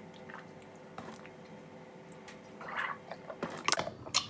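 Mouth sounds of a man taking a dry scoop of creatine powder and washing it down with juice: faint smacking and swallowing, a short gulp about three seconds in, then a few sharp clicks and knocks near the end.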